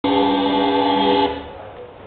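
A loud chord of several steady tones from a musical instrument. It starts abruptly, is held for about a second and a quarter, then stops and leaves a short fading tail.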